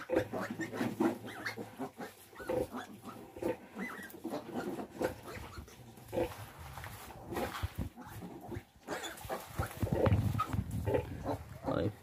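A nursing sow and her three-day-old piglets grunting and squealing as the litter jostles for teats while suckling, in short irregular calls throughout.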